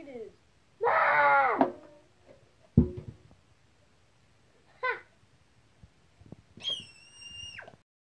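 A child's voice wailing, falling in pitch, then a single loud thump. After that comes a short yelp and a long, high-pitched squeal near the end.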